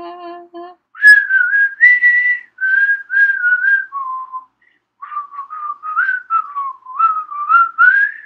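A person whistles a tune in short phrases of held and sliding notes, after a low hummed note in the first second.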